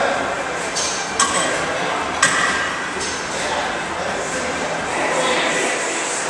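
Gym room background: indistinct voices, with two sharp clinks about one and two seconds in.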